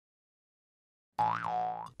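Silence for just over a second, then a cartoon 'boing' sound effect: one short pitched tone that swoops up and back down.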